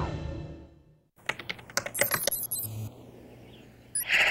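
Theme music fading out, then a quick run of keyboard-style clicks with high electronic computer bleeps, a sound effect for a computer screen displaying text.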